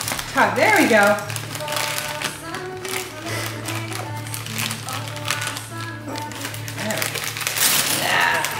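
Indistinct voices of several people talking in a room, with scattered light clicks and crinkling and a steady low hum.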